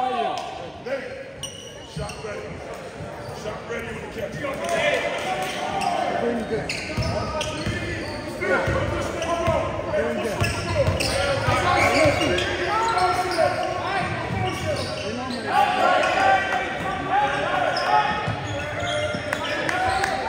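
Basketball game in a gym: a ball bouncing on the hardwood court while players, benches and spectators talk and call out, all echoing in the large hall. The voices grow busier from a few seconds in.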